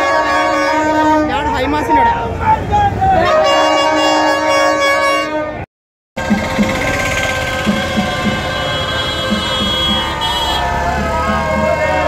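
Plastic party trumpets blown in long held tones over a shouting crowd. The sound drops out for half a second midway, then horn blasts go on as motorbikes and a jeep pass.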